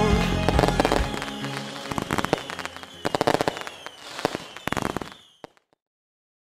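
Fountain fireworks crackling, a dense run of small pops and snaps, as music fades out during the first second. The crackling stops suddenly about five seconds in, with one or two last pops.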